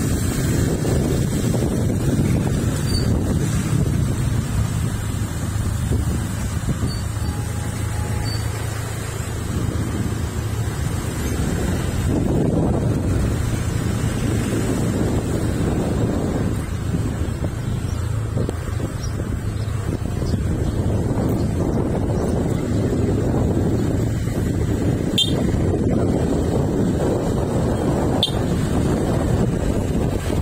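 Wind buffeting the microphone of a phone carried on a moving motorcycle, swelling and easing every few seconds, over the motorcycle's engine running steadily.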